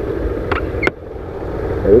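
Small Honda motorcycle's engine running at low riding speed, a steady low rumble mixed with wind on the microphone. Two light clicks come a little past halfway.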